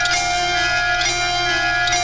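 Horror TV show theme music: a bell-like tone struck about once a second, each strike ringing on into the next, over a steady low hum.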